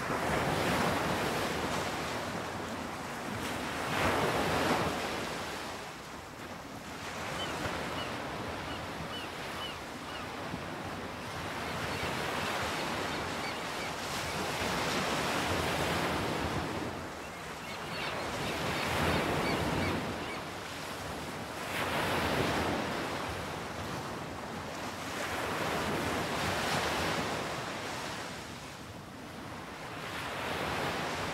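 Sea surf washing and breaking, swelling and falling away in slow surges every few seconds.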